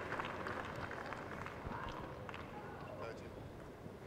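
Tennis crowd murmuring between points, the noise slowly dying down, with a few faint taps.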